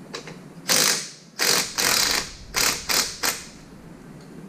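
A ratchet clicking in about six short bursts, working a fastener at the rear wheel hub of a Ural motorcycle during wheel removal.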